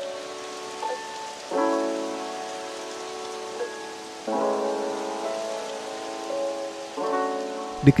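Background music of slow, held chords, with a new chord about every three seconds and a few short higher notes, over a steady hiss like rain.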